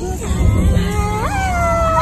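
A girl's high voice holding a long howl-like note: it wavers low at first, jumps up about halfway and is held, over the low road rumble of the car cabin.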